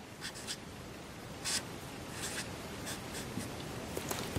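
Felt-tip colour marker (edding) drawing on paper: a series of short scratchy strokes, several in quick succession near the start, then single strokes spread out as lines and letters are drawn.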